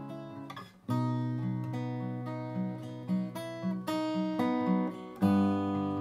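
Acoustic guitar being played: after a brief drop, a chord is struck about a second in, followed by a repeating pattern of picked bass notes under ringing strings, and another chord is struck near the end.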